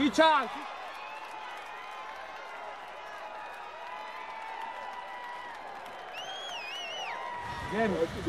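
Distant voices of players and spectators across a football pitch, a low steady din, with a high warbling whistle lasting about a second near the end.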